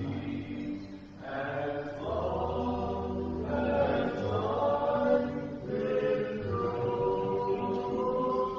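A hymn sung slowly by several voices over sustained accompanying chords and low held bass notes, with phrases changing about every second or two.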